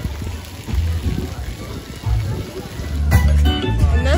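Wind buffeting the microphone in gusts, over a steady hiss of splash-pad water jets. About three seconds in, music with a voice comes in.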